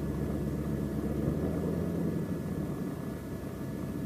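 Bell P-39 Airacobra's Allison V-12 engine idling steadily on the ground with the propeller turning.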